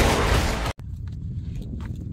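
A loud burst of noise from a dubbed-in film clip of a bear smashing through a wooden board, cut off abruptly less than a second in, followed by wind noise on the microphone.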